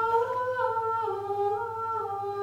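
Gregorian chant sung by a single high voice, wordless-sounding long held notes that step slowly downward in pitch.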